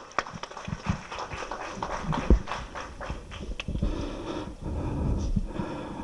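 Podium microphone being handled: irregular knocks and bumps, with one heavier thump about two seconds in, over a low background murmur in the hall.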